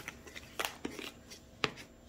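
Plastic snap-lock storage box being handled, with a few sharp clicks as its latches are unsnapped and the lid is lifted off.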